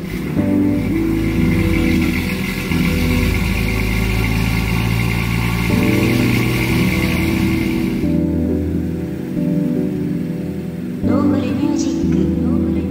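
Background music, with the BMW M2's turbocharged straight-six engine running underneath for about the first eight seconds, then cutting off abruptly. A short sweep comes near the end.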